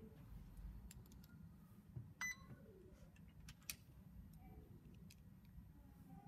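Mostly near silence, with a few faint clicks and one short beep about two seconds in, the sound of buttons being pressed on a LEGO Mindstorms EV3 programmable brick.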